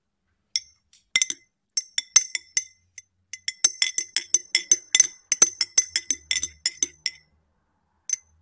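Metal teaspoon stirring tea in a ribbed glass tumbler, clinking against the glass with a bright ring. A few scattered clinks come first, then a quick run of about five clinks a second, which stops shortly before the end.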